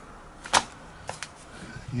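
A single sharp click about half a second in, followed by two fainter ticks, over quiet room tone.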